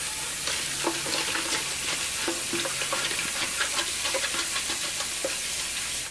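Kitchen tap water running steadily onto a nonstick crisper tray in a stainless steel sink, with a silicone spatula lightly scraping baked-on residue from the tray's worn coating.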